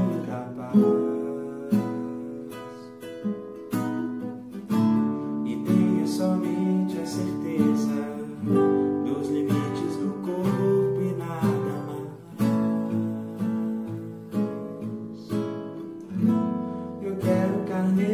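Classical nylon-string guitar played with the fingers: a run of chords, each plucked sharply and left to ring and fade before the next.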